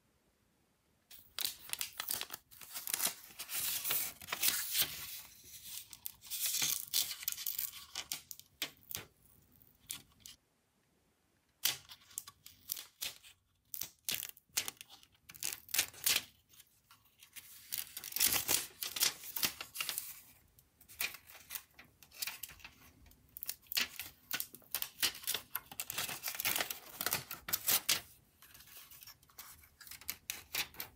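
Black plastic insulating wrap being peeled off a 2.5-inch laptop hard drive: crinkling and tearing of the sheet and its adhesive in rapid scratchy bursts, with a pause of about a second a third of the way in.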